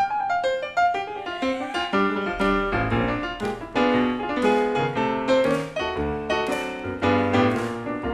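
Piano solo on an electric stage keyboard: a steady run of struck chords and single notes, with low bass notes under them.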